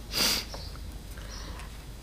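A single short sniff-like breath in close to a microphone, about a quarter of a second long, just after the start, then quiet room tone.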